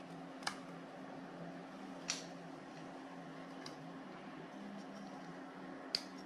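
Quiet steady hum of the converted ATX computer power supply's cooling fan, with a few faint clicks as hands handle the test bulb and the voltage knob.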